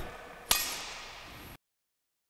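A single sharp crack of a badminton racket striking a shuttlecock about half a second in, echoing briefly in the hall, then the sound cuts off to dead silence about a second later.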